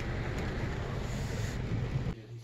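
Steady rumble and hiss inside a car cabin.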